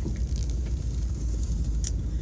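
Steady low rumble of a small van's engine and running gear, heard from inside the cabin, with a brief click near the end.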